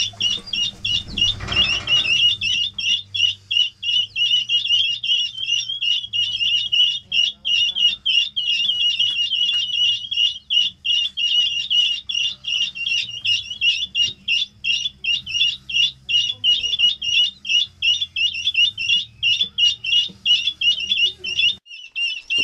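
A brood of young ring-necked pheasant chicks and guinea fowl keets peeping continuously, a dense overlapping stream of rapid high-pitched peeps, many per second.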